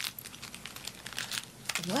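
Handling noise close to the microphone: a run of small clicks and rustles as small objects are fumbled with in the hands.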